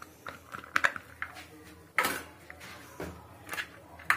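Chopped onion scraped by hand out of a plastic box into a plastic bowl: scattered light plastic clicks and taps, with a sharper knock about two seconds in.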